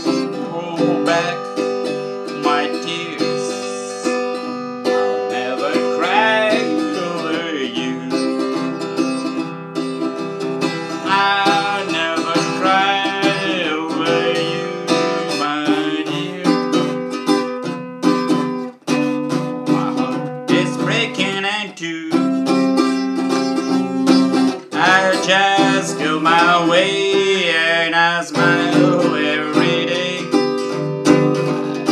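Harley Benton travel acoustic guitar strung with high-tension 13-gauge steel strings, strummed through a chord progression in a steady rhythm.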